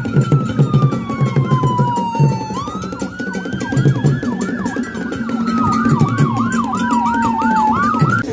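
Siren sound effect in a news-intro jingle: a police-style wail that glides slowly down, jumps back up and falls again, with a faster yelping siren running alongside in the second half, over a pulsing bass beat.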